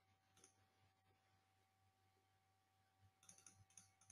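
Near silence: room tone with one faint click about half a second in and a short run of faint clicks near the end.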